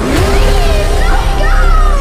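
A vehicle engine revving loudly, its pitch rising at the start, with higher sliding tones over it.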